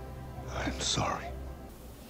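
Film soundtrack: one short, breathy, whispered spoken line about half a second in, over a low, steady music score.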